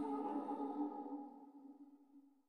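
A woman's a cappella singing voice on a last held note, its reverb tail dying away and fading out near the end.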